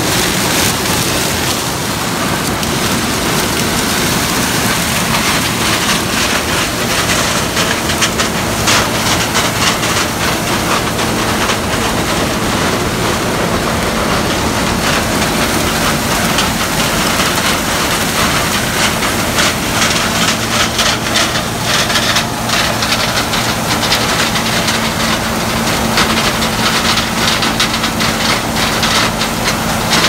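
Gleaner combine harvesting corn at close range: the engine and machinery run steadily with a low hum, under a dense crackling rattle of dry stalks being pulled into the corn head.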